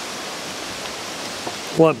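A steady, even hiss of outdoor background noise, with a man saying "Lunch" near the end.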